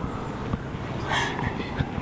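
Steady low outdoor background rumble, with a short, soft breathy voice sound about a second in.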